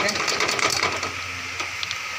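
Wet, freshly washed split urad dal hitting hot ghee in a wok: a dense, irregular crackle of spitting pops over a steady sizzle, the pops thinning out after about a second.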